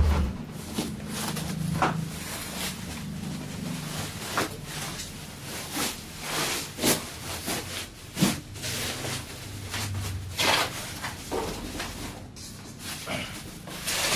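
Sheets of bubble wrap rustling and crackling as they are handled and folded over a cardboard box, in irregular bursts of crinkling.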